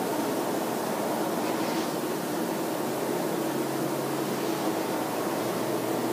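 Steady room tone: a constant hiss with a faint low hum, as from a classroom's ventilation.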